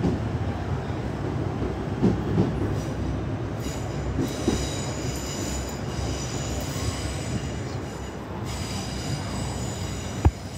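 Northern electric multiple unit running slowly over curved track: a steady low rumble with a few knocks, then high-pitched wheel squeal that starts about three and a half seconds in, breaks off briefly near the end and comes back.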